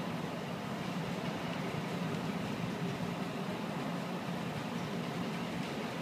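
Steady background room noise of a large hall: an even low rumble with no distinct events.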